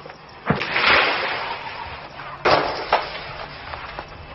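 Two gunshots about two seconds apart, each a sharp crack followed by a long echo trailing off; a fainter crack comes half a second after the second shot.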